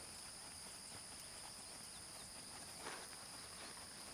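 Faint hoofbeats of a heavy horse trotting on a dirt arena, under a steady high-pitched insect chorus.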